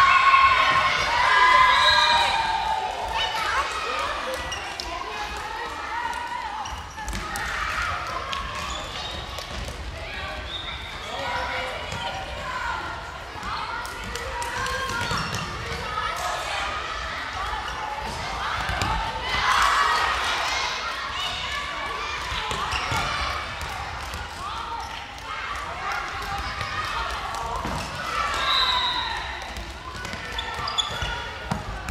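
A ball bouncing and thudding on a sports-hall floor during a children's ball game, with children's high-pitched shouts and chatter throughout, loudest near the start and again near the end.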